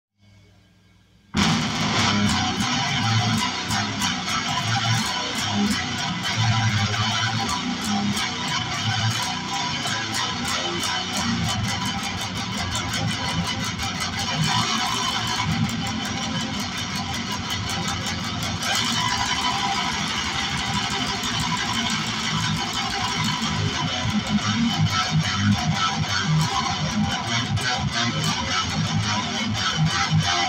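Electric guitar playing fast picked riffs, coming in about a second and a half in and running on steadily.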